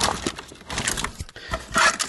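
Tangled cables and plastic plugs rustling and clattering against each other in a clear plastic storage box as they are rummaged through, with irregular clicks and scrapes.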